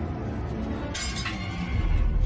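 A sudden crash with brief clinking about a second in, like glass or small hard objects breaking or knocked over, followed by a couple of quick strikes. It plays over dark film score, with a deep rumble swelling near the end.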